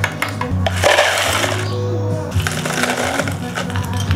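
Ice cubes poured into a plastic cup in two crackling rushes, about a second in and again near the end, over background music.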